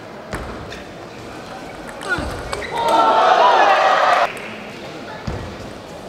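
Sharp clicks of a table tennis ball in play, then about three seconds in a loud burst of shouting lasting over a second that cuts off suddenly, with a dull thump near the end.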